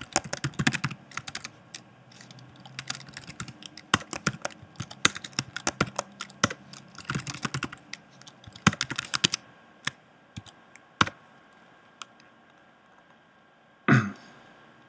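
Typing on a computer keyboard: quick bursts of keystrokes, thinning out to a few single key presses after about ten seconds.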